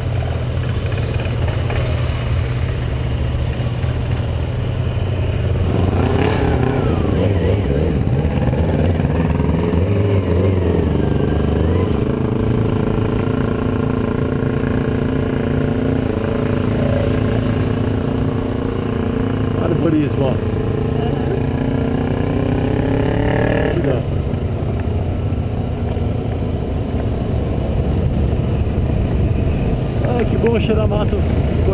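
Motorcycle engine heard from a camera mounted on the bike. It runs low and steady at first, then pulls away from about six seconds in, with the engine note rising and shifting as it gets under way, and dropping back about three quarters of the way through.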